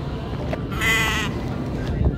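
A single wavering bleat, sheep- or goat-like, about half a second long, a little under a second in, over a steady low background hum.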